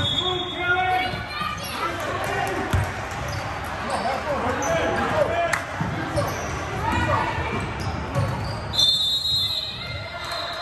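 A basketball bouncing on a hardwood gym floor during play, with shouting voices echoing in the large hall.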